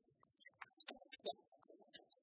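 Rustling and crinkling of small packaging being handled, with irregular light taps, as a pin is taken out of it.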